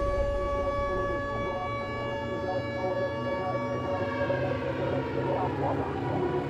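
A sustained siren-like tone with overtones, holding steady and then sagging slightly in pitch in the second half.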